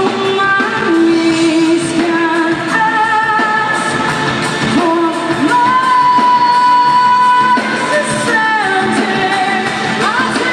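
Live rock band playing, with a female lead singer over electric guitars and drums; she holds one long high note about six seconds in.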